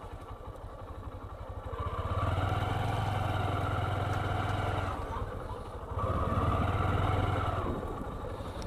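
Honda 125cc motorcycle's single-cylinder engine running at low riding speed, opening up twice: about two seconds in and again about six seconds in, easing off briefly between.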